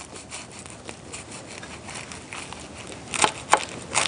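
Knife cutting through a crisp baked phyllo (galash) pie, the flaky pastry layers crackling irregularly, with a few sharper clicks near the end.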